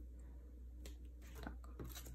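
Faint handling of photocards: a few light clicks and soft rustles over a steady low hum.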